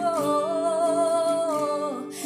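A woman singing one long held note with a slight waver, over acoustic guitar chords; the note ends shortly before the next phrase.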